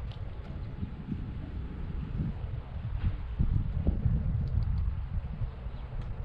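Wind buffeting the microphone: an uneven low rumble with irregular soft thumps.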